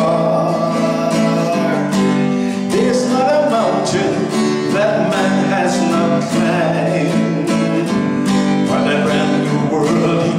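A man singing while strumming an acoustic guitar, with regular strums under a steady melody.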